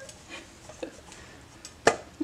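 Frying pan handled while flatbread is flipped in it: a few faint clicks, then one sharp clack near the end.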